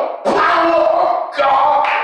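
A man's loud, half-sung preaching through a microphone, in long held-pitch phrases that break briefly twice.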